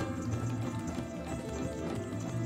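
Tap shoes and kathak footwork with ankle bells striking the stage in a quick, steady rhythm, over the band's music.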